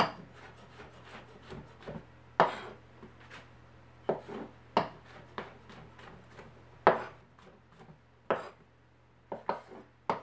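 Chef's knife slicing brown mushrooms on a cutting board: about ten sharp, unevenly spaced knocks of the blade hitting the board, with softer cutting and scraping between them.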